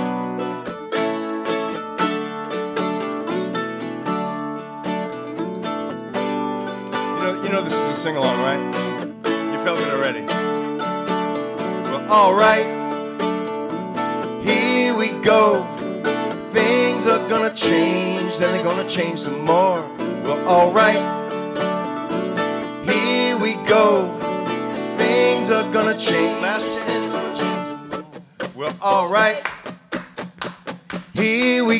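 Acoustic guitar and mandolin playing an instrumental break in a folk/bluegrass-style song, with a lead melody line that bends and wavers in pitch over the strings through most of the break. Near the end the playing drops back and turns choppier.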